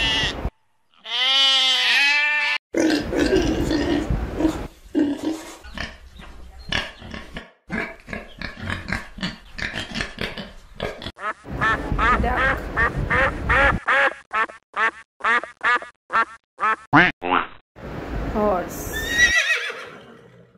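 A run of farm-animal calls: sheep bleating in the first few seconds, then piglets grunting and squealing in short, rapid calls through the middle, and a horse whinnying near the end.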